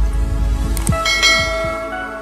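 Animated-intro sound effects: a bell chime rings out about a second in and slowly dies away, over a deep rumble and short falling swooshes.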